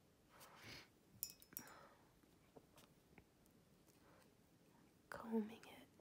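Near silence with a soft breath about half a second in and a few faint short clicks and taps, then a quiet spoken word near the end.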